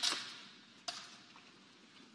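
A quiet pause in a large reverberant room: a sound dies away at the start, then a single faint click about a second in, then near silence.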